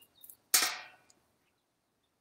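A single sharp knock about half a second in, fading out within half a second, with a faint click just before it.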